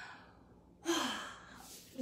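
A woman's sudden breathy exhale, a short sigh with a brief voiced edge about a second in that trails off: letting out breath on relaxing after holding a back-extension exercise.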